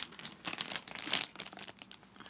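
Rustling and crinkling of a black satin corset being handled and turned over, with a sharp rustle at the start and a denser flurry about half a second to a second in, fading near the end.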